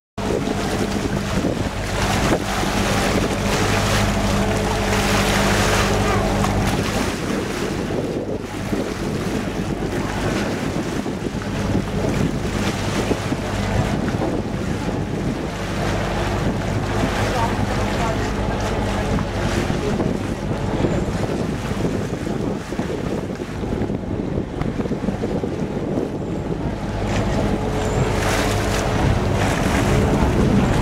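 A lake passenger boat's engine running steadily under way, a low hum with water rushing past the hull and wind buffeting the microphone. The engine hum is clearest at the start and again near the end.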